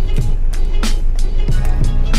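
Background Malay song in an instrumental gap between the singer's lines, with short percussive hits over a steady low backing. The vocal comes back just after.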